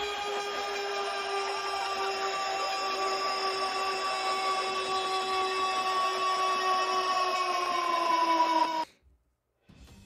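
Goal sound effect: a single long held tone that dips slightly in pitch near the end and cuts off suddenly after about nine seconds.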